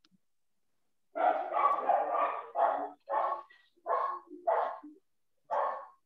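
A dog barking repeatedly over a video-call microphone, starting about a second in: a quick run of barks followed by about five single barks.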